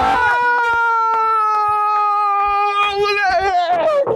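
A person's long, high wail, held for about three and a half seconds and sinking slowly in pitch, like mock crying, with a few short clicks under it.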